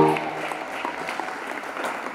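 Congregation applauding, a spread of light clapping that slowly dies down.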